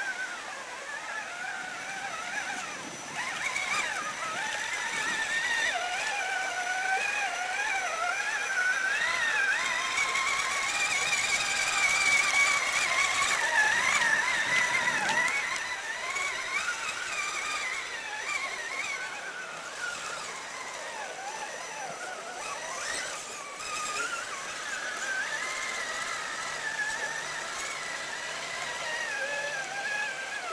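Traxxas Summit RC crawler's brushless motor and gearbox whining, the pitch wavering up and down with the throttle as it crawls. It is loudest midway through.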